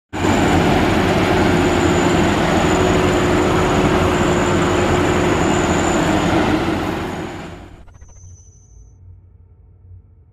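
Maxxi Bimo Xtreme rice combine harvester running, a dense steady machine noise with a thin high whine through it, fading out about seven seconds in.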